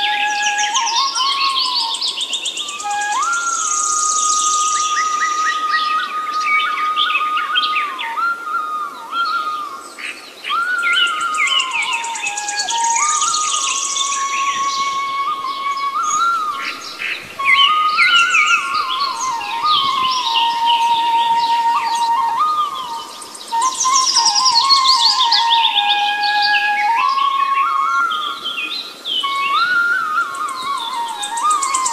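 Indian bamboo flute playing a slow melody of held notes with slides between them, over a bed of birdsong. Bird chirps and trills run throughout and are busiest near the start, in the middle and towards the end.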